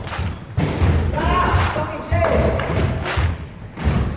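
Basketball thudding on a wooden sports-hall floor and players' feet pounding as they run, with repeated low thuds and sharp knocks, and players' voices calling out.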